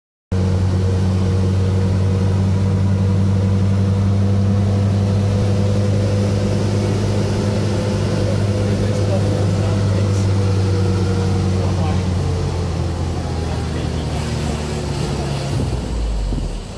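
A vehicle's engine running at a steady cruise as it drives along the road, a constant low drone. Near the end the engine note drops a little and gets quieter as the vehicle slows.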